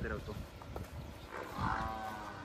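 A water buffalo calling: one long, steady moo that begins about a second and a half in.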